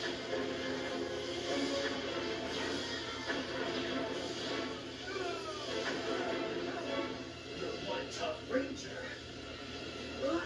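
Action-show soundtrack played from a television and heard through its speaker: sustained dramatic music under energy-blast sound effects, with a few sharp hits about eight seconds in.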